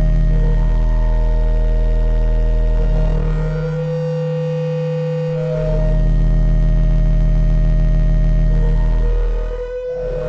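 SOMA Lyra-8 organismic synthesizer playing sustained drone tones, its voices switched by an Ornament-8 sequencer loop with two cells active. The deep bass drone drops out for about two seconds midway, leaving a thinner higher tone, then comes back. It thins out again just before the end.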